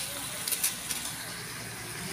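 Vegetables sizzling in a wok: a steady frying hiss, with a few light clicks about half a second in.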